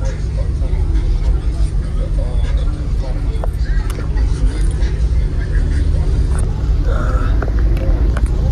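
Busy outdoor car-show ambience: a steady, loud low rumble with background crowd chatter and occasional small clicks.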